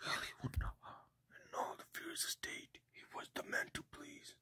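A person whispering a run of quiet words, too soft for the speech recogniser to catch.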